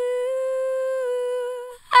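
A woman's solo lead vocal, Auto-Tune bypassed, holding one long steady note at the end of a sung line, fading out near the end.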